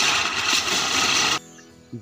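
Ground spinner firecracker (chakri) hissing loudly as it throws sparks across a steel plate, cutting off abruptly about one and a half seconds in. Faint background music follows.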